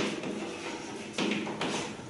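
Chalk tapping and scratching on a chalkboard as a word is written, with a sharp tap at the start and a few more short taps and strokes after about a second.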